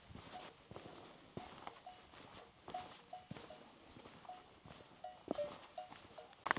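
Cowbells on grazing cattle clanking faintly and irregularly, a dozen or so short ringing notes, with footsteps and occasional sharp taps.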